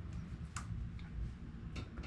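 A few faint, sharp clicks, about four spread over two seconds, from hands handling the plastic casing of a split-type air conditioner's indoor unit.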